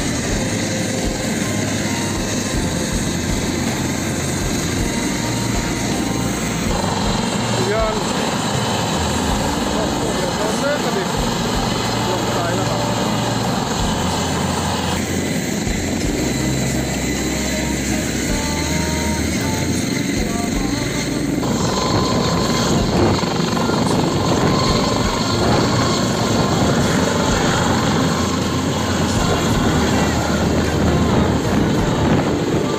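A helicopter running close by: a loud, steady rotor and turbine noise, growing a little louder over the last several seconds, with people's voices mixed in.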